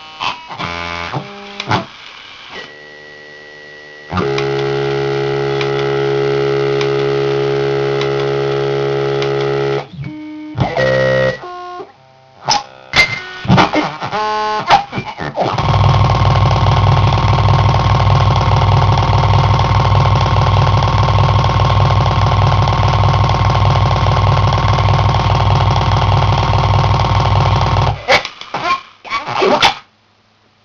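Circuit-bent Furby's sound chip glitching: its voice comes out as choppy stuttering fragments, then freezes into a steady held tone about four seconds in for some six seconds. After more stutters, a louder steady buzzing drone is held from about halfway through for some twelve seconds before breaking back into stutters. These are the sounds of its two bends, a glitch bend and a hold trigger, both worked with potentiometers.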